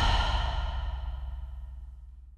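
The fading tail of a closing musical hit: a low boom and high ringing tones dying away steadily.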